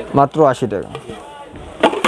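A man's voice briefly, then a single sharp clack near the end as a melamine bowl is handled and knocked.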